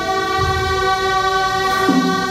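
Ceremonial music: a loud, reedy wind instrument holds one long note and moves to a new note near the end.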